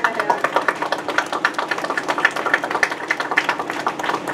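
A small group of people applauding: many irregular hand claps.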